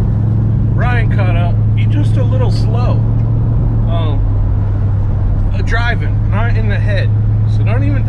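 1967 Chevrolet Caprice under way, heard from inside the cabin: a steady low drone of engine and road noise.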